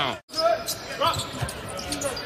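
Basketball being dribbled on a hardwood court, a few bounces. The sound cuts out briefly just after the start.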